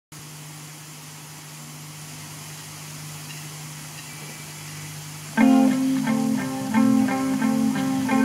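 A steady low hum and hiss for about five seconds, then an instrumental rock intro led by guitar starts suddenly about five seconds in and plays a repeating riff.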